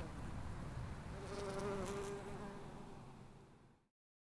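Bumblebee buzzing as it forages on ling heather flowers, a steady hum that swells about a second in and then fades out near the end.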